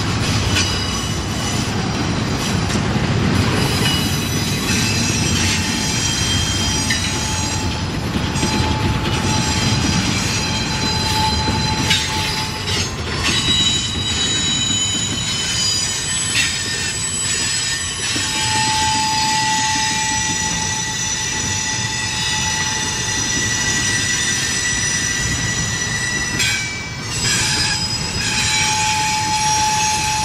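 Norfolk Southern double-stack intermodal freight train rolling by on a tight curve: a steady rumble of wheels on rail, with high, held wheel squeals that start and stop as the cars work through the curve.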